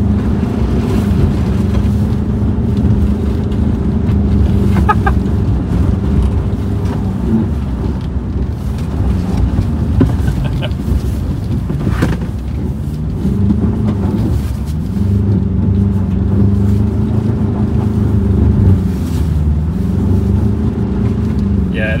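Ford Ranger Raptor's 2.0-litre EcoBlue twin-turbo four-cylinder diesel working hard as the pickup is driven in slides on snow. The engine note falls and climbs again several times, with a brief knock about halfway through.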